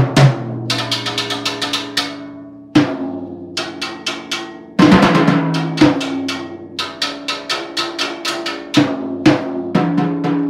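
School percussion trio playing drums with sticks: fast runs of strokes broken by several loud accented hits, with the drums ringing on a low pitched tone between strokes.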